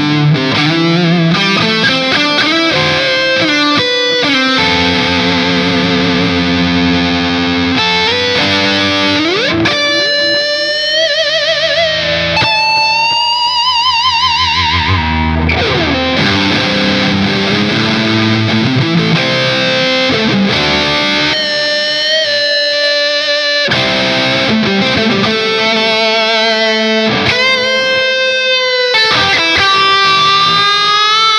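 Electric guitar with Fishman Fluence pickups, set to the fourth position of its five-way pickup switch, played through a high-gain Revv Generator 120 amp. It plays distorted lead lines with long sustained notes and wide vibrato.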